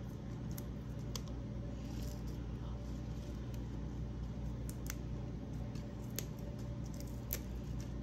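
Fresh parsley leaves being stripped off their stalks by hand: small, faint snaps and rustles at irregular moments over a steady low hum.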